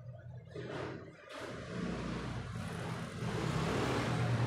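A low rumbling noise with a hiss over it that starts about half a second in and keeps growing louder.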